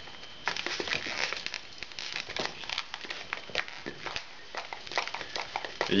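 Latex modelling balloon rubbing and squeaking under the fingers as a section is twisted off: a run of short, irregular squeaks and crinkles.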